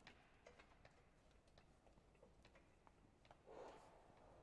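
Near silence: room tone with a few faint scattered clicks and a brief soft noise near the end.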